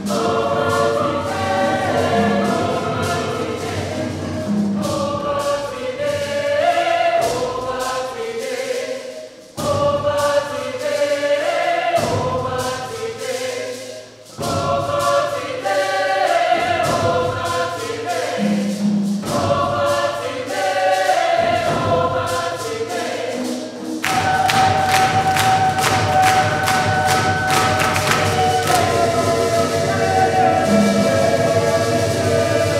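A large mixed choir singing a gospel-style song, accompanied by hand drums, with two brief breaks between phrases. About two-thirds of the way in, the choir holds one long chord over a quick, steady beat.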